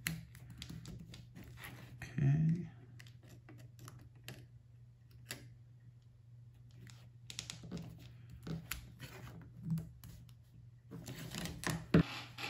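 Light, irregular clicks and taps of a small screwdriver and needle-nose pliers tightening a machine screw and nut that hold a gear motor to a robot chassis plate.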